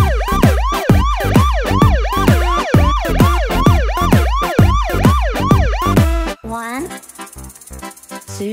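Cartoon police siren in a fast yelp: a rapid run of whoops, each a quick rise and fall in pitch at about three a second, with a deep thud under each whoop. About six seconds in it stops abruptly and gives way to quieter, lighter children's music.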